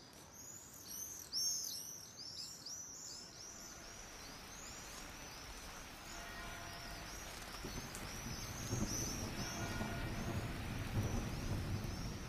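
Sampled birdsong, many quick chirps, mixed in Kyma with a layer of rain hiss and soft bell tones that swell in from about four seconds in and grow louder near the end, as tilting the iPad crossfades the bird layer into the rain-and-bells layer.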